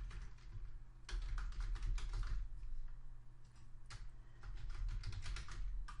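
Typing on a computer keyboard: quick runs of keystrokes in several bursts with short pauses between them, over a steady low hum.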